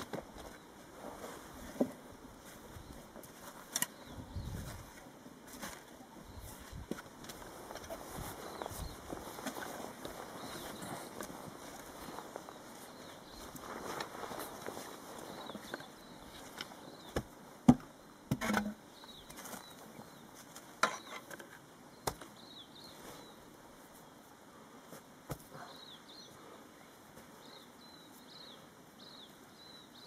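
Steel shovel working soil around the base of a fence post: scraping and digging, with a few sharp knocks, the loudest past the middle.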